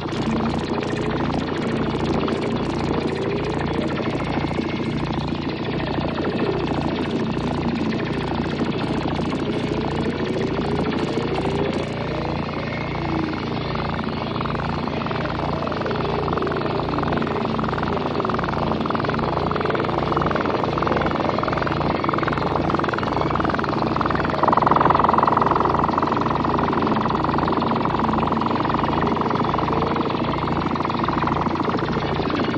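Experimental analogue synthesizer collage played through a Yamaha CS-5's filter. A low, pulsing drone runs under rhythmic ticking in the highs for the first twelve seconds. From about halfway a tone warbles up and down, and a louder steady tone cuts in near the end.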